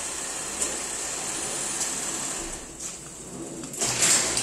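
Car engine idling steadily in an enclosed garage, a continuous even hum and hiss, dipping briefly near the end.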